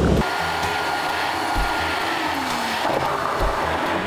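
Steady rushing noise of a jet airliner, with a faint high whine that sinks slightly in pitch.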